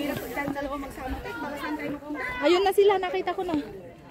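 People talking, with chatter from voices around; the speech is strongest in the second half.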